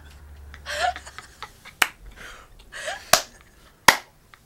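Several people laughing hard in breathy bursts, with three sharp smacks, the last and loudest near the end, like hands clapping or slapping together.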